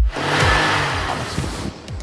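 A rushing car-engine sound effect laid over electronic dance music with a steady kick drum; the rush fades just before the end.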